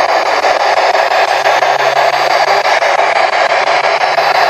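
Ghost-hunting spirit box sweeping through radio stations: a loud, steady hiss of radio static chopped by fast, even ticks as it jumps from station to station.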